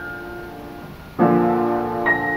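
Upright piano played solo in a slow, gentle piece: held notes fade away, then a loud chord is struck just past halfway and rings on.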